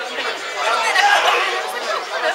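Audience voices: several people talking and calling out at once, overlapping chatter with no clear words.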